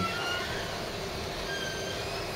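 Steady background noise of a pub room, with a few faint, thin high tones, each held for a fraction of a second, near the start and again in the second half.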